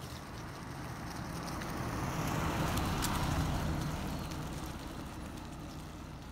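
A car passing by: its tyre and engine noise swells to its loudest about halfway through, then fades away.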